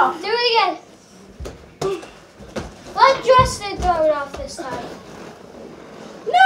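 Children's high-pitched shouts, twice, with a few dull thumps on the floor in between.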